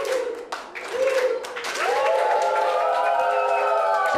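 A class of schoolchildren clapping in a rhythm and chanting, then many children's voices shouting together in a sustained din from about two seconds in.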